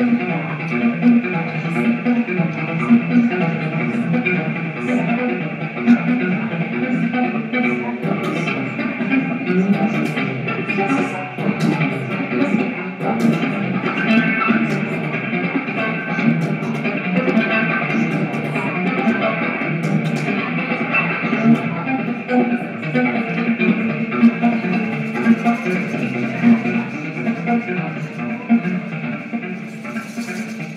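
Live free-jazz improvisation on electric cello, keyboards and synth, and drums, playing continuously, with scattered cymbal and drum strokes over a dense, low, string-heavy texture.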